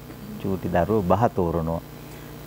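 Speech only: a man's voice says a short phrase in the middle, with brief pauses before and after.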